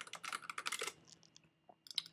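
Computer keyboard typing: a quick run of keystrokes through the first second, then a few scattered taps.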